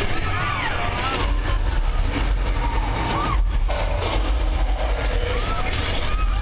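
A steady deep rumble from the King Kong 360 3-D tram ride, with short voice-like cries rising and falling in pitch over it, several in the first second and more near the end.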